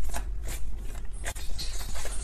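Tarot cards being shuffled and handled: a run of quick, irregular light rustles and clicks.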